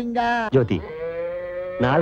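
A bullock mooing once: a single held call of about a second in the middle, between lines of speech.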